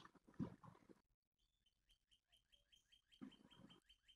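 Near silence, with a faint run of short, high, falling chirps, about four a second, starting about a second and a half in.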